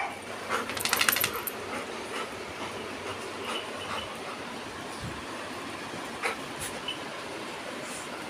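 A quick run of light metallic jingling about a second in as the dogs shift about, then a steady background noise with a couple of faint clicks.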